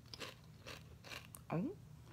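A person chewing a mouthful of crisp potato chip, with about four soft crunches in quick succession.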